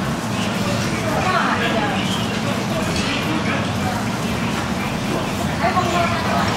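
Busy restaurant background: people talking at surrounding tables over a steady low hum.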